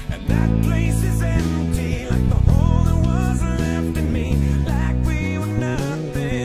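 Electric bass, an SX Jazz bass with an Audere jazz preamp, playing a busy line of low notes with a fat, clean tone along to a backing song with a singing voice.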